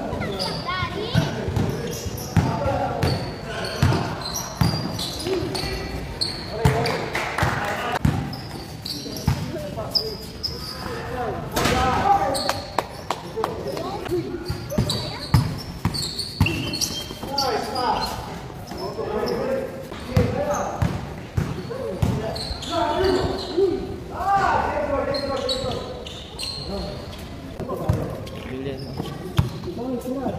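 Basketballs bouncing and being dribbled on a concrete court during a pickup game: many short thuds throughout, with players shouting to each other, in a large open hall.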